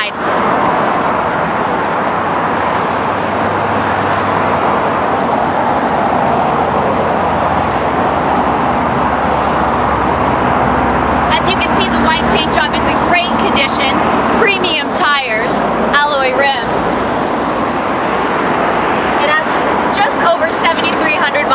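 Steady road-traffic noise, an even rushing haze with a low hum under it, with a woman talking for a few seconds in the second half.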